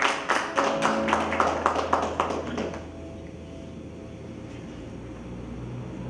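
Acoustic guitar strummed in an even rhythm, about three or four strokes a second, with its chords ringing. The playing fades out about two and a half seconds in, leaving a faint low hum.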